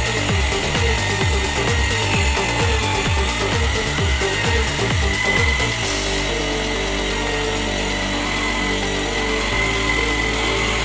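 Mitsushi 800 W electric impact drill running steadily while sanding, under background music whose low beat gives way to sustained tones about six seconds in.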